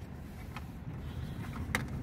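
Low steady background rumble, with a single sharp click near the end as the plastic trunk sill trim cover is handled.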